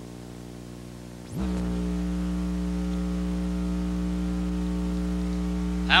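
Steady electrical mains hum with a stack of overtones over tape hiss, jumping louder about a second and a half in with a brief rising sweep, then holding steady.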